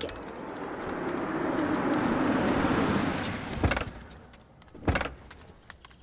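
A Mahindra Bolero SUV drives up and pulls to a stop, its sound swelling for a few seconds and then dying away. Then come two sharp clunks about a second apart as its door is worked.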